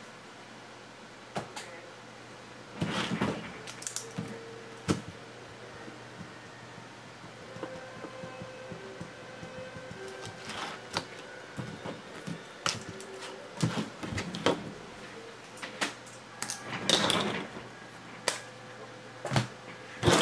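Trading cards and hard plastic card holders being handled on a table: scattered light clicks and taps with a few short rustles, over a low steady hum.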